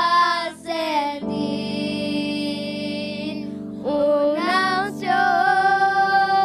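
A group of children singing an evangelical worship chorus in Spanish over sustained instrumental chords. About a second in, they hold one long note for nearly three seconds before moving on.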